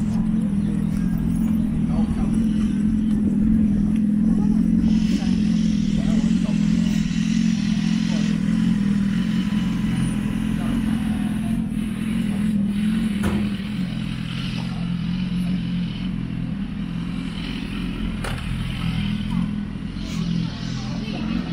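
City street sound: a steady low engine hum with traffic passing and voices in the background.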